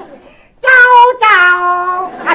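A high, sing-song voice chanting two long, drawn-out syllables, the second pitched lower than the first, after a brief quiet moment.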